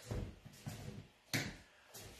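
Adjustable gas-lift stool being let down: a short rush of noise at the start and a sharper burst of noise about a second and a half in as the seat sinks.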